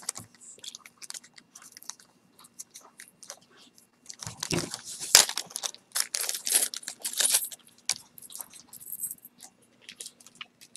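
Small clear plastic jewelry bag crinkling as it is handled and opened, with light jingling of metal chain jewelry. The sound is irregular crackles, busiest in the middle.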